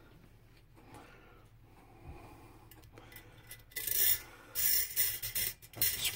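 Rubbing and scraping handling noise from an AR-15 lower receiver with its buffer tube fitted being picked up and handled in the hands, in several short bursts in the second half.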